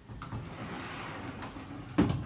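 A sliding patio door rolled along its track and shut, closing with a sharp knock at the end.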